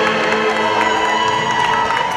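Live tunantada music from the accompanying band, with a long held high note coming in about half a second in, over a cheering crowd.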